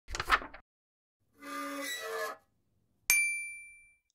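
Intro logo sting made of sound effects: a short burst of sound at the start, a brief pitched tone about halfway, then a single bright ding about three seconds in that rings and fades out.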